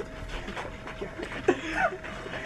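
A few faint, short vocal sounds in a quiet room, one rising in pitch near the end.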